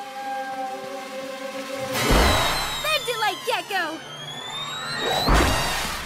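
Cartoon soundtrack of music and sound effects. Held music notes give way about two seconds in to a heavy thud with a low rumble, followed by quick wavering, sliding tones and a long rising whistle-like tone. A second heavy thud comes near the end.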